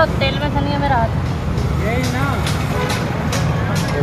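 Steady low rumble of vehicle traffic, with several sharp clicks in the second half while metal parts of an e-rickshaw wheel hub are handled.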